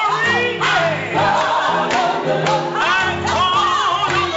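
Gospel song performed by a small mixed group of singers over instrumental backing, with voices sliding through runs above a steady bass line.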